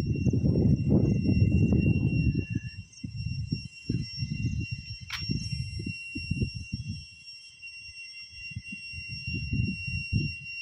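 Wind buffeting a phone microphone in irregular gusts, heaviest in the first two or three seconds. Faint, steady high-pitched whining tones sit above it.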